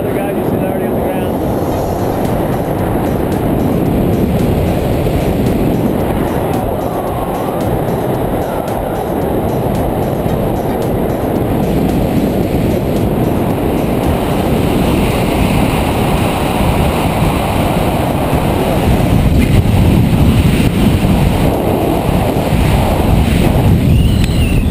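Wind buffeting the camera's microphone under an open parachute canopy: a steady, loud low rumble that grows louder in the last few seconds of the descent.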